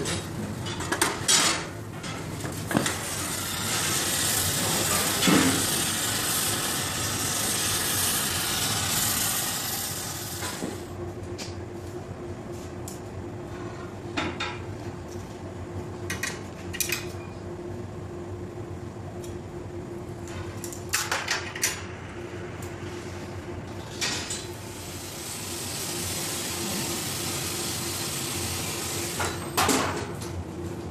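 Gas torch hissing while hot glass is worked, with scattered sharp clinks of steel glassworking tools against the glass and the metal rod. In the middle stretch the torch hiss drops away, leaving a steady low hum and occasional clinks, and the hiss returns near the end.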